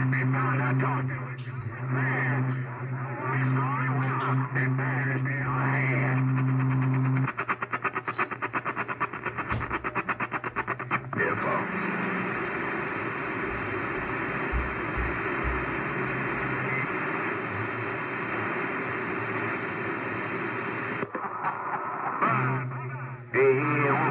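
A CB radio on channel 6 receiving distorted, garbled voice transmissions through its speaker. A steady low hum runs under the voices for the first seven seconds, then the sound turns to a rapid fluttering stutter for a few seconds, and then to hissing static with faint voices.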